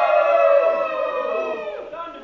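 A group of men cheering together in one long, loud shout that tails off near the end.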